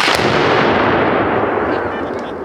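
An explosion: a sudden loud blast that dies away slowly over about two seconds, its hiss fading first.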